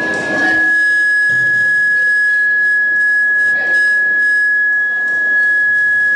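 Public-address microphone feedback: one steady, high-pitched whistle held at an unchanging pitch.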